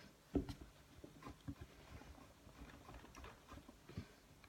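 Faint, irregular taps and rubs of hands rolling strips of modelling clay on a table, with the loudest tap about half a second in.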